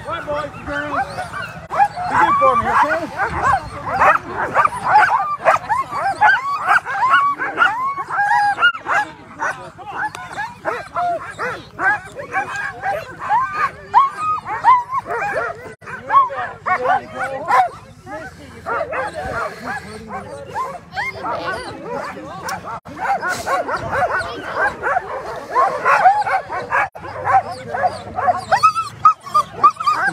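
A team of harnessed Alaskan husky sled dogs barking and yelping together, many short rising-and-falling calls overlapping without pause: the excited clamour of dogs eager to run at a race start. It eases a little midway, then builds again near the end.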